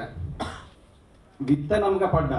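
A man's short cough or throat-clear into a handheld microphone about half a second in, followed by a brief pause. Then a sharp click, and a man's voice starts speaking near the end.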